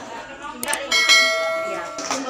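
A single bell-like metallic ding, preceded by a couple of light clicks, ringing out clearly for about a second and fading away.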